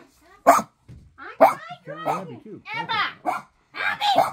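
A dog barking, with sharp barks about half a second and a second and a half in.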